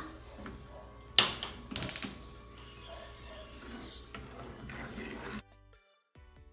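Gas stove burner being lit: a sharp click from the knob, then a quick run of ticks from the spark igniter. Background music comes in near the end.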